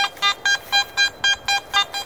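Garrett AT-series metal detector sounding its target tone: a fast, even run of short high beeps, about four a second, as the coil sits over a buried target reading 77.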